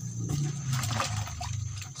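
Liquid fertiliser mix sloshing as it is stirred by hand in a plastic bucket.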